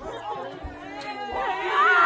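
Several people talking and calling out over one another, with one voice rising into a long, high call near the end.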